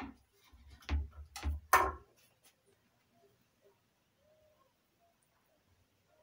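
A few short, sharp knocks and clatters in the first two seconds, with a low rumble under them, then near silence.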